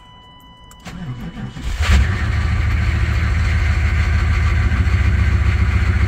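Cold start of a 1996 GMC pickup's 6.5-litre V8 diesel, heard from inside the cab. About a second in, the starter cranks it for about a second, the engine catches with a brief loud burst about two seconds in, and it then settles into a steady idle.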